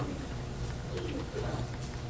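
A pause between spoken phrases: a faint, low murmur of a voice over a steady low hum.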